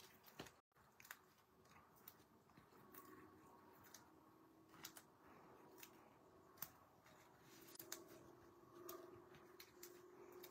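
Near silence, with faint scattered ticks and light rustles from hands handling paper and foam adhesive dimensionals and pressing them onto a cardstock panel.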